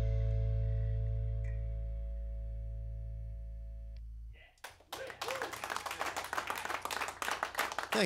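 A band's final chord, with an archtop guitar, ringing out and slowly fading, cut off just over four seconds in. Applause with a few voices starts about half a second later.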